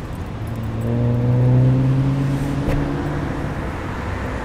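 A car's engine hum swells and fades over about three seconds as the car drives past, its pitch staying steady. A single short click comes near the end of it.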